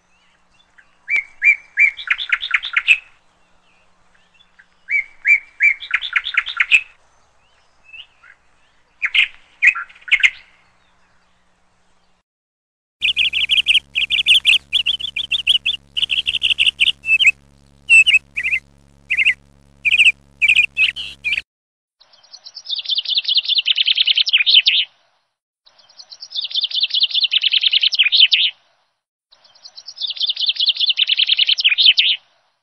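Birds singing: three short phrases of rapid chirps, then a stretch of dense, fast chirping with a steady low hum under it that starts and stops abruptly, then buzzy trilled calls repeated about every three seconds.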